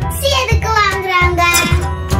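A child's voice singing over background music, holding one long note that slowly falls in pitch, with a steady bass line underneath.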